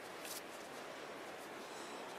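Faint steady outdoor background hiss, with a brief soft rustle of the mesh bug jacket being handled about a quarter second in.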